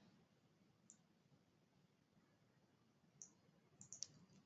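Near silence, with a few faint short clicks: one about a second in and a small cluster near the end.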